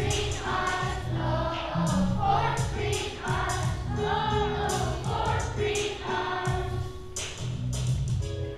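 A children's choir sings with instrumental accompaniment, which keeps a steady low line under the voices.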